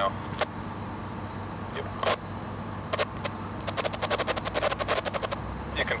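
Low, steady drone of diesel engines, with a few separate sharp clicks and, about two-thirds of the way in, a quick run of rattling clicks lasting under two seconds.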